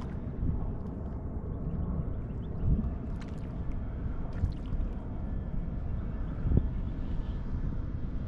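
Steady low wind rumble on the microphone over open water, with two short low knocks, one about a third of the way in and one near the end.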